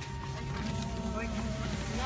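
Steady low drone of an airliner cabin, with faint voices in the background.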